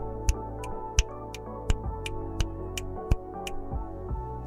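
Finger snaps, a sharp snap about every 0.7 seconds with fainter ones between, heard through a condenser microphone from behind a sound isolation shield. Background music with sustained tones plays underneath.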